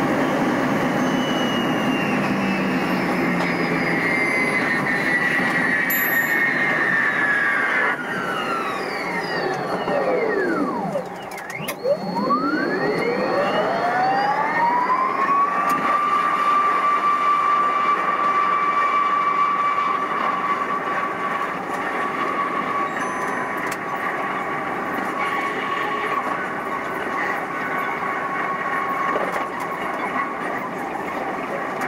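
Electric passenger train running, heard from the driver's cab: a steady rumble of wheels on track under a whine from the traction equipment. The whine falls in pitch to a low point about eleven seconds in, with a brief drop in loudness and a click, then rises again and holds a steady tone.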